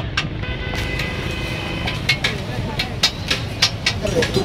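Busy street-food kitchen: metal utensils clatter against woks and pots in quick, irregular strikes over a steady din of crowd voices and traffic. A steady high tone sounds from about half a second in to about two seconds.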